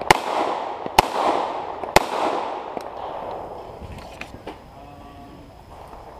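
SIG P226 MK25 9mm pistol firing three shots about a second apart, each followed by a long echo, then a weaker fourth shot, at bowling pins.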